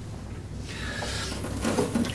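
Soft rubbing and handling noise, starting about half a second in, as the mower's control cable and handle are moved against its plastic body.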